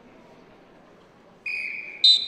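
Referee's whistle: one blast about one and a half seconds in, over a low hum of arena crowd noise.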